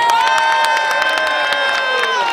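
Rally crowd cheering: several voices hold one long shout for about two seconds, sliding down and trailing off near the end, over scattered clapping.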